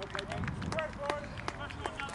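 Scattered hand claps from a few spectators applauding an injured rugby player off the pitch, thinning out, with distant voices shouting on the field.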